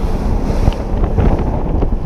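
Bass boat running at speed: heavy wind buffeting on the microphone over the rush of water along the hull and the outboard motor, steady and loud.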